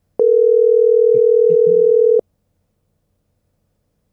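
Telephone ringback tone: one steady two-second ring that starts with a click a moment in and cuts off with a click. It is a dropped call ringing through as it is placed again.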